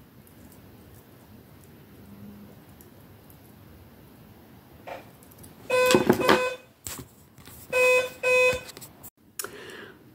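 Doorbell buzzing: one buzz just under a second long about six seconds in, then two short buzzes about two seconds later.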